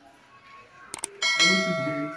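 Edited-in subscribe-button sound effect: mouse clicks about a second in, followed by a bell that rings out with many steady tones.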